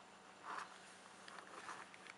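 Faint handling noise of a small plastic Panasonic G70 flip phone being turned in the hand: a soft rub about half a second in, then a few light clicks.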